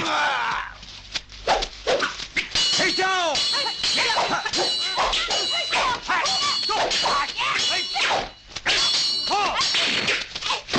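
Dubbed kung fu fight sound effects: a rapid run of punch and kick whacks, metal clangs with a high ringing as blades clash, and fighters' shouts and grunts. The ringing runs through the middle of the stretch and falls away shortly before the end.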